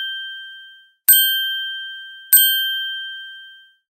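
Bell-like ding sound effects from an animated subscribe button. The tail of one ding fades out at the start, then two more clear dings come, about a second in and a little past two seconds, each ringing for over a second before dying away.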